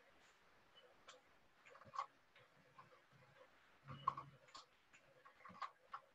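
Near silence with a few faint, scattered computer keyboard clicks as entries are typed in.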